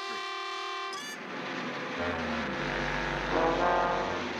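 A held musical sting for about a second, then a cartoon van's engine-and-road sound effect: a steady rush, with a low engine rumble coming in about two seconds in, under brassy music.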